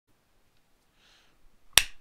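Near silence, then a single sharp finger snap near the end.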